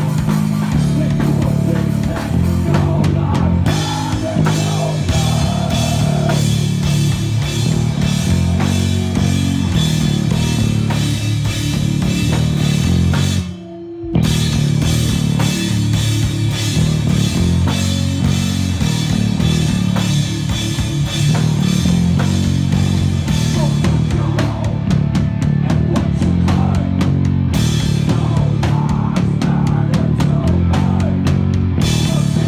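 A hardcore band playing live at full volume: pounding drum kit, distorted electric guitar and bass. About halfway through, the music cuts out for a moment, then the band comes back in.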